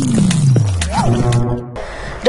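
News-channel logo sting: a short burst of music and sound effects with a deep swoosh sliding down in pitch, a few sharp hits, and a brief rising-and-falling tone about a second in. It cuts off shortly before the end.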